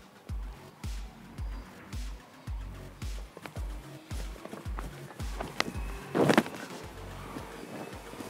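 Background music with a steady low beat, about two beats a second. A short, loud burst of noise comes about six seconds in.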